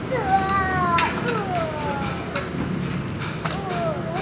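People's voices calling out and talking in the background, with long falling calls in the first half and again near the end. A few sharp knocks cut in, the loudest about a second in.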